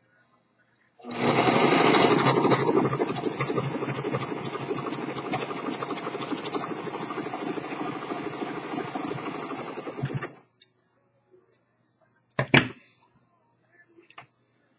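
Singer three-needle-position serger running at speed, sewing a three-thread overlock seam through poly/cotton broadcloth with a fast, even stitching chatter. It starts about a second in, is loudest at first and then a little steadier, and stops about ten seconds in. A single sharp click follows near the end.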